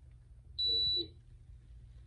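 One steady high electronic beep, about half a second long, from a racket swingweight machine during a swing-weight measurement, over a faint low hum.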